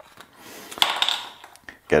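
Metal screw cap being twisted off a glass olive oil bottle: a short scraping rustle with a couple of sharp clicks about a second in.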